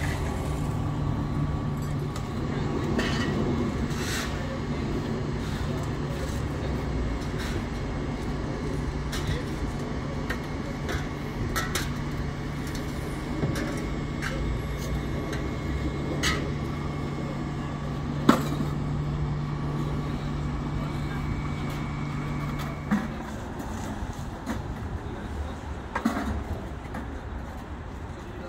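An idling vehicle engine gives a steady low hum that cuts out about 23 seconds in. Scattered knocks and clicks of cleanup work sound over it, the sharpest about 18 seconds in.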